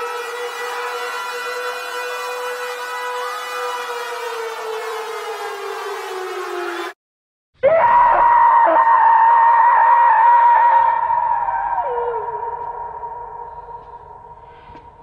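A loud sustained wailing tone, like an air-raid siren, slides down in pitch and cuts off abruptly about seven seconds in. After a brief silence a higher, wavering tone starts, dips in pitch near the end and fades away.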